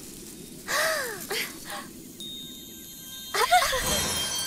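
Cartoon magic sound effect: a thin, steady high shimmer with faint fast ticking that runs for about a second in the second half, marking the star rising glowing out of the magic well. A girl gasps before it and stammers "uh, uh" after it.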